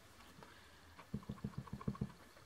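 Clear acrylic stamp block tapped repeatedly onto an ink pad to ink it, making a quick run of soft taps, about eight in under a second, starting about a second in.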